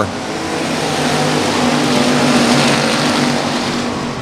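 Several dirt-track Factory Stock race cars running laps together, their engines blending into one steady racket that swells about halfway through as the pack passes and then eases off.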